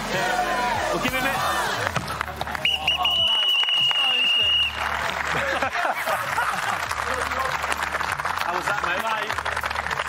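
A whistle blown once in a long, steady, high blast of about two seconds, signalling that the 60-second round is over. A crowd shouts and claps around it, and the clapping and cheering carry on after the blast.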